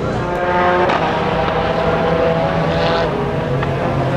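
Race car engines running on the circuit: several steady engine tones over a low rumble, with the pitch changing about a second in and again near three seconds.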